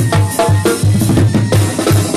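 A live Mexican banda (brass band) playing, with the percussion to the fore: a steady low pulse about four times a second under snare and cymbal hits, and the horns fainter above.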